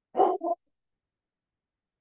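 A dog gives one short bark, in two quick parts, a moment after the start.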